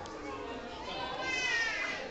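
Background hubbub of young children and adults talking. In the second half a high-pitched child's voice calls out, its pitch falling.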